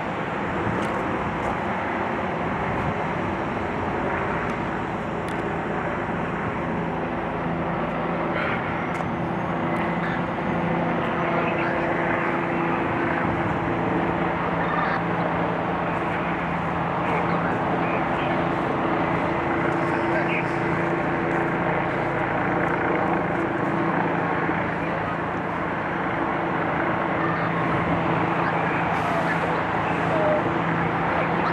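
Heavy truck engine running steadily at idle, a constant low hum over a background rumble.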